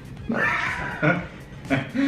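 Speech only: a person's exclaimed "äh, äh", two short vocal sounds about a second apart.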